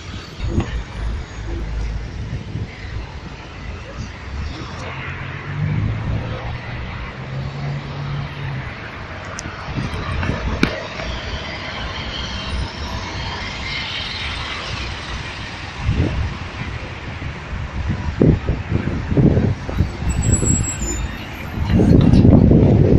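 City street traffic: car engines running as a slow queue of cars creeps past, with one low engine note that rises in pitch a few seconds in. A few low thumps near the end.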